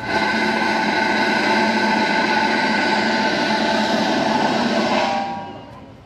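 Snare drum roll, starting suddenly, held steady for about five seconds, then fading away.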